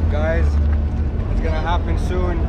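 Sea-Doo personal watercraft running under way, its steady engine hum half buried under heavy wind rumble on the microphone.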